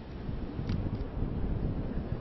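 Blizzard wind blowing across a handheld microphone: an uneven, low rush of wind noise.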